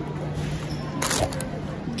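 Supermarket background noise: a steady low hum and faint voices, with one short noisy burst about a second in.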